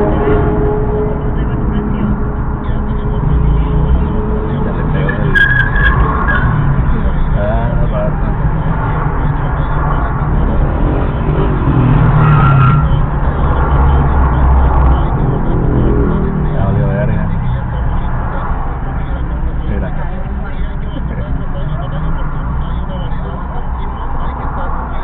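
Steady low engine and traffic rumble of a car stopped in traffic, picked up by a dashcam microphone, with indistinct voices at times.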